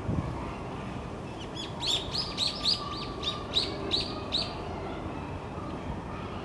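A small bird calling a quick run of about ten sharp, high chirps, each dipping slightly in pitch, at roughly three a second for about three seconds, over a low steady background rumble.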